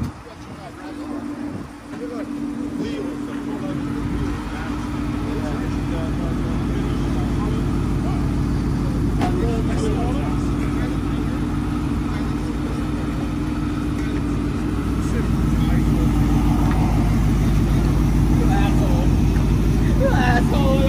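Supercharged V8 of a Ford F-150 running at idle with a deep, steady rumble that builds over the first few seconds and grows louder near the end.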